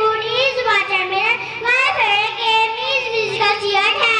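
A young girl singing into a handheld microphone in short, continuous phrases.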